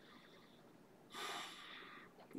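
A pause of near silence, then about a second in a short, sharp breath drawn in through the nose, fading over the last half second.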